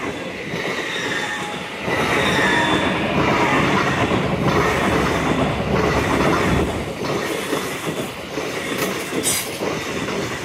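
An LNER Azuma passenger train passing at speed: a loud rumble of wheels on the rails that grows louder about two seconds in as the carriages come by close, with a faint high steady tone over it for a second or so.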